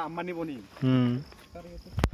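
Men talking in short phrases over a faint, steady, high insect trill from the surrounding vegetation.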